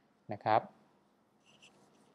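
Faint short scratches and taps of a pen stylus on a tablet, starting near the end, after a brief spoken phrase.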